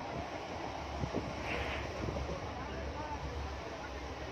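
Moving passenger train heard from inside the carriage: a steady low rumble and wind rush through the open window, with a few faint knocks and some faint voices.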